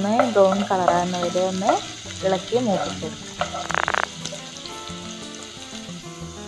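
Chopped shallots sizzling in hot oil in a pan while a wooden spatula stirs them, with a brief louder rasp about three and a half seconds in. A melodic music track plays over it, loudest in the first two seconds and softer afterwards.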